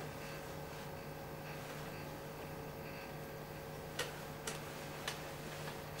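Faint steady electrical hum from the powered-up amplifier, with three light clicks in the second half as a test lead is handled and plugged into the tape socket.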